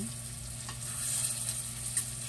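Food sizzling in a pot over a gas burner as it is stirred with a metal spoon, a steady hiss that swells slightly midway, over a steady low hum.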